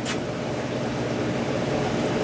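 Steady low mechanical hum, like a small motor or fan running, with a brief click just after the start.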